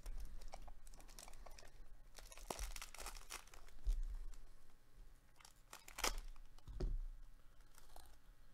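Foil wrapper of a 2021 Topps All-Star Rookie Cup baseball card pack being torn open and crinkled by hand, with a dense crackle through the middle and a sharp crinkle about six seconds in.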